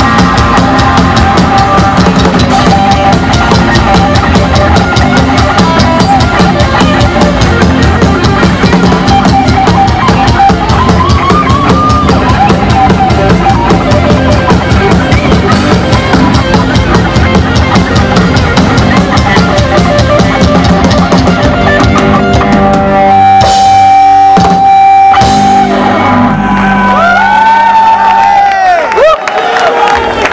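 A live punk rock band plays loudly: drum kit, electric guitars and bass guitar. About twenty seconds in, the song winds down into held, ringing notes and a few hits, then sliding high squeals, and it stops about a second before the end.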